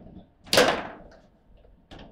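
Table football being played hard: one loud, sharp crack about half a second in, with a short ring-out, among a few light clicks of the rods and figures.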